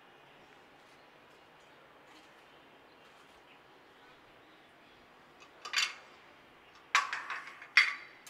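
Faint room hiss, then a cluster of knocks and clinks at a blender jar near the end, three of them sharp, as chopped tomato is put in.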